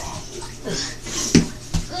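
Scuffling and clothes rustling as two people grapple, with a sharp knock about a second and a half in.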